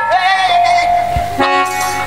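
Live folk stage music: one long held reedy note that slides up at its start and holds for about a second and a half, followed by a sustained chord.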